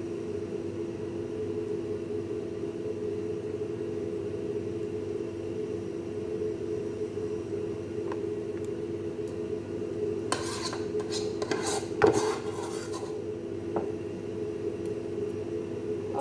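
Metal fork and spoon scraping and clinking against a glass baking dish while spreading a soft topping, with a run of sharper clinks about ten to thirteen seconds in, the loudest near twelve seconds. A steady hum runs underneath.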